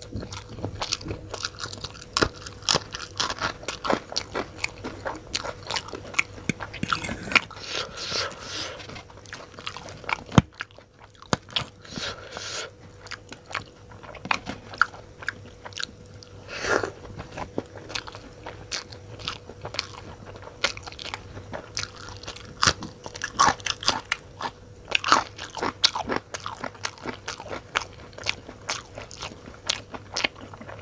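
Close-miked chewing of Maggi instant noodles, interspersed with crisp crunching bites of raw green chilli: a dense run of wet mouth clicks and bites. One sharp, loud crunch stands out about ten seconds in.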